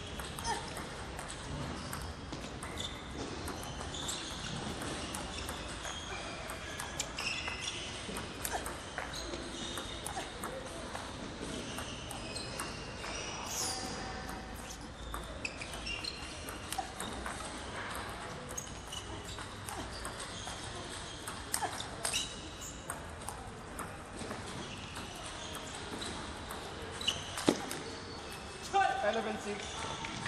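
Table tennis rally: the celluloid-type plastic ball is struck back and forth, giving a run of sharp clicks of bat on ball and ball on table. The loudest hit comes near the end as the point is won.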